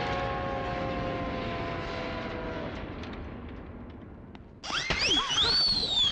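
Film comedy sound effects for a slip. A metallic clang rings out and fades over the first few seconds. Near the end comes a sudden, loud, high sound that glides up and down in pitch.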